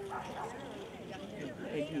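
Mostly people talking close by, a conversational voice.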